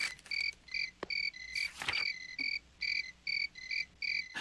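Cricket chirping sound effect: a steady run of short, evenly spaced high chirps, about three a second, the cartoon cue for an awkward silence. A couple of faint short clicks sound over it.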